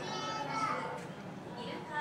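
Visitors' chatter with children's voices, several people talking at once.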